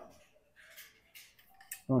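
Faint scattered clicks and rustles of gloved hands handling bicycle shifter cable housing at the handlebar.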